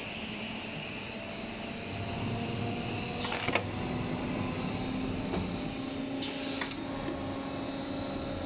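JWELL blow molding machine making plastic sea balls, running with a steady mechanical hum and tone. Two short hisses of air come about three seconds in and again past six seconds.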